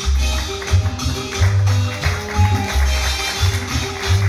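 Live serenade band playing an instrumental passage with no singing: keyboard over a bass line of short notes in a steady rhythm, with light percussion.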